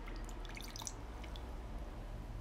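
Water poured from a jug into a small bowl, heard as a faint trickle with a few small drips and splashes in the first second.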